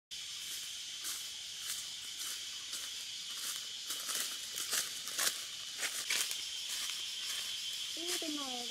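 Steady high-pitched insect drone of forest ambience, with short rustling crunches about every half second, louder between about four and six seconds in.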